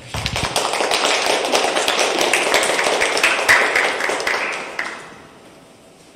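Audience applauding, the claps dying away about five seconds in.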